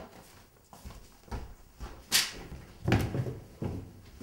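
Footsteps with a few dull, uneven thuds and a short sharp hiss about two seconds in.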